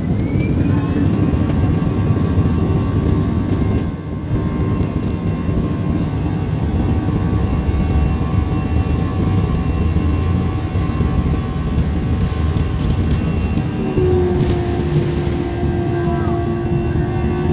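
Jet airliner engines heard from inside the cabin, spooling up to takeoff thrust: a rising whine in the first second, then a steady loud rumble with a high fan whine through the takeoff roll. A second steady hum joins near the end.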